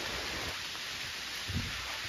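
Steady heavy rain falling, heard as an even hiss.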